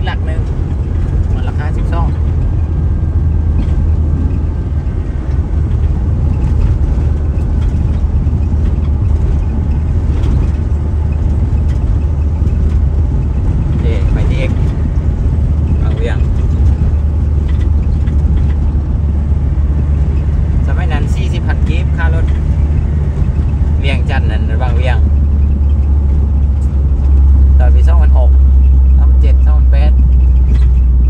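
Steady low rumble of engine and tyre noise heard inside a moving vehicle's cabin, growing louder near the end.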